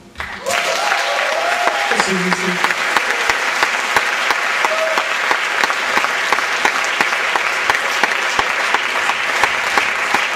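Theatre audience applauding, starting about half a second in and holding steady, with a few cheering calls in the first couple of seconds.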